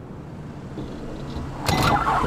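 Van cabin noise: the engine and the tyres on a gravel road make a low, steady rumble. Near the end a sudden loud clatter comes as the van stops abruptly.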